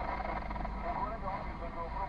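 Speech, voices talking inside a car cabin, over a steady low rumble.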